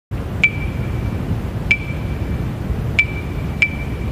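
Metronome-style count-in: pinging clicks, the first two slow and about 1.3 s apart, the next two twice as fast, over a steady low hum.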